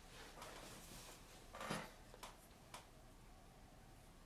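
Quiet handling sounds of sculpting tools at the workbench: a soft rustle, then a short knock not quite halfway in and two light clicks.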